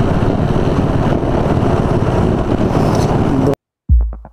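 Motorcycle engines running with heavy wind noise on the microphone while riding, cutting off abruptly about three and a half seconds in. Electronic music with a kick-drum beat starts just before the end.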